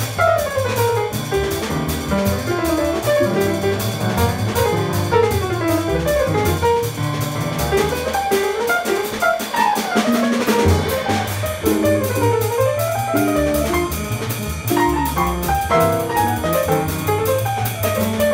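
Live jazz quartet playing an up-tempo tune: an archtop guitar solos in fast single-note runs that sweep up and down, over upright bass and drum kit.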